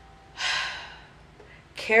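A woman's single sharp, breathy exhale or gasp about half a second in, fading over a moment, before she starts speaking again near the end.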